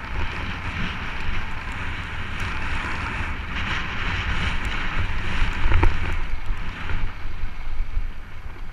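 Wind buffeting the microphone of a camera moving along a gravel dirt road, over a steady hiss of tyres rolling on gravel. It grows louder about five and a half seconds in, with a few sharp knocks from the tyres hitting loose stones.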